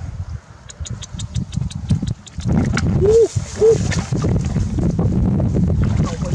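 Fish thrashing in a mesh dip net as they are tipped into a plastic bucket: a quick run of light slaps and ticks, about six a second, that fades out. A low rumble of wind on the microphone runs under it. A little past the middle come two short cries that rise and fall.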